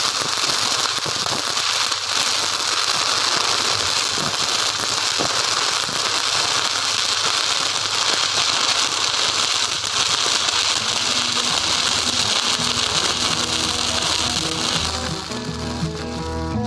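Stick-welding arc crackling steadily as the electrode burns. Music fades in under it near the end and takes over as the crackle stops.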